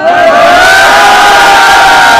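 A crowd of men cheering and shouting, very loud, with several voices holding long shouts together.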